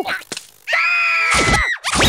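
A cartoon character's scream: one high, held cry of about a second, starting just before the middle and dropping off at the end.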